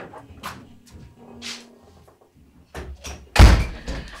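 A door slammed shut about three and a half seconds in: one loud, deep bang with a short ringing tail. A few lighter knocks come before it.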